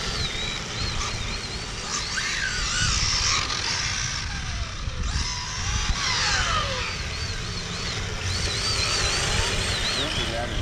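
Electric RC cars' motors whining and changing pitch with the throttle, with a few falling whines as the cars race past, over a low steady rumble.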